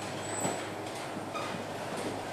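Motorised roller shutter door rising, a steady mechanical running noise with a few faint short whistles over it.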